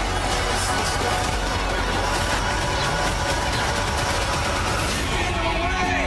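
Movie trailer soundtrack: music mixed with a dense wash of action sound effects, at a steady loud level. Held musical tones come forward near the end as the title card appears.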